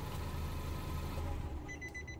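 Nissan car's engine idling steadily, a low even hum, heard from inside the cabin. A faint high electronic beeping tone comes in near the end.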